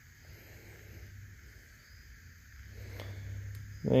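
Quiet workshop with a low steady hum that grows slightly louder near the end, and faint clicks from a seal being worked out of a hydraulic cylinder gland with a metal pick.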